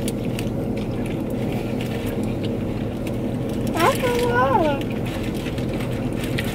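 Steady hum inside a car with the engine running, with small clicks of a fork and chewing. About four seconds in, a short voice rises and falls in pitch, like humming or singing along.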